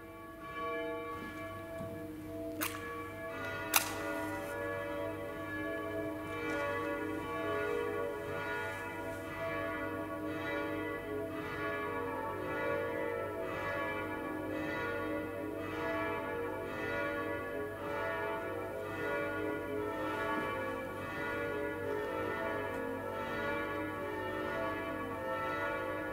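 Church bells ringing in the start of a service, the strokes of several bells overlapping into a steady peal. Two sharp clicks sound about three and four seconds in.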